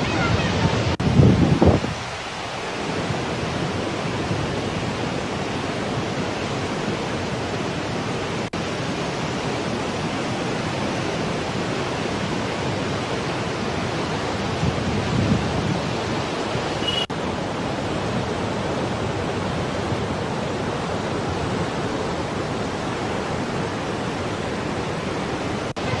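Floodwater rushing through the open crest gates of the Srisailam Dam spillway: a steady, even rushing noise, with two brief low bumps about a second in and about halfway through.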